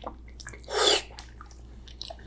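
Close-miked eating of a layered rainbow gelatin (jello) cube: soft wet mouth clicks of chewing, with one louder, short hissing burst just under a second in.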